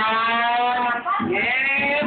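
A person's voice yelling a long, drawn-out note, then after a short break a second, higher drawn-out yell.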